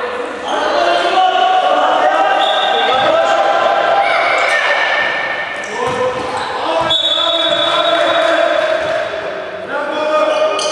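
Basketball game sounds in an echoing sports hall: a basketball bouncing on the court floor now and then, under overlapping voices of players and spectators.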